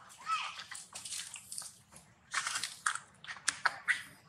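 Macaques biting and chewing small pieces of food at close range, with a run of short sharp clicks in the last second.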